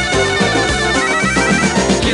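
Instrumental passage of a 1975 French pop song played from a vinyl 45 single: a steady beat and bass under sustained melodic instruments, with no singing.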